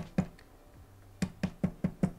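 Pushbutton on a lift-platform joystick control box being pressed repeatedly with a gloved fingertip: two sharp clicks, a pause of about a second, then a quick run of clicks about four or five a second. The button stays sunk instead of springing back up, clogged by built-up paint and dust.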